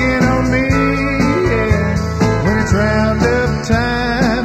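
Country band recording with guitar, playing on with no sung words; several instruments sound at once, and some notes slide up and down in pitch.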